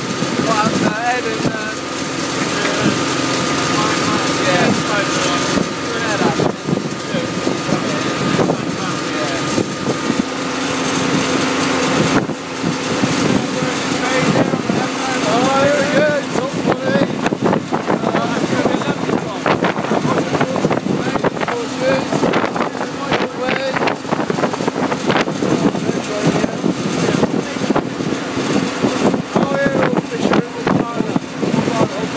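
John Deere 2030 tractor engine running steadily as it tows a trailer along the road, with wind buffeting the microphone and people talking.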